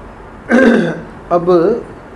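A man clears his throat once, about half a second in: a short, rough burst lasting about half a second.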